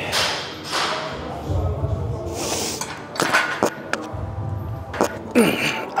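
Heavy barbell being unracked for a push press, heard close through a clip-on wireless mic: hard breaths, then sharp knocks about three and five seconds in as the bar bumps the mic.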